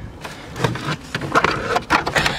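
Hands working in an open car center console, handling parts and trim: a string of irregular sharp clicks and knocks over rustling.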